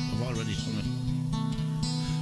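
A man singing an Irish folk ballad over strummed acoustic guitar.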